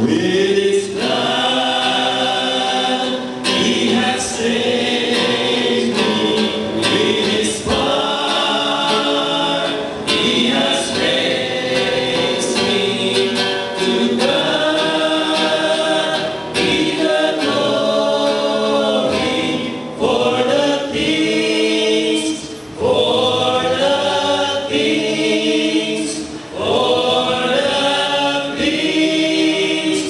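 A small group of men singing a Christian worship song together in harmony, in phrases of a few seconds with short breaks, accompanied by a strummed acoustic guitar.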